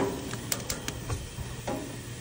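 Bell peppers blistering on a hot grill: a steady sizzle broken by a scattered handful of sharp pops and crackles as the skins char.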